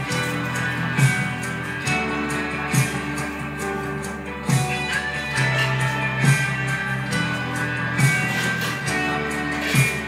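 Recorded music playing for a dance: a guitar-led track with sustained bass notes and a strong beat accent about every second and three-quarters.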